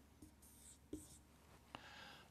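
Faint squeaks of a marker pen drawing short strokes on a whiteboard, with a light tap near the end.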